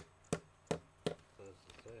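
Four sharp taps or knocks, evenly spaced about a third of a second apart, followed by a man's voice starting to speak.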